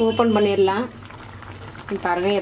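A woman's voice for the first second. Then the prawn masala is heard simmering quietly in the aluminium kadai on the gas stove, bubbling in the water the prawns have released (no water was added), over a low steady hum.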